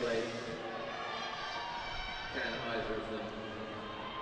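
Faint background chatter of several voices, with one voice a little clearer for a moment a couple of seconds in.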